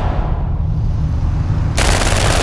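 A low, rumbling trailer music bed, then about three-quarters of the way in a sudden loud burst of rapid gunfire from a drive-by shooting.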